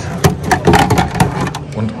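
Voices talking, mixed with a few sharp clicks and knocks of hard plastic as the kayak's storage bucket is handled.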